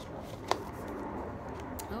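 A small white cardboard box is being pried open by hand. There is one sharp click about half a second in and a fainter one near the end, with quiet handling noise between.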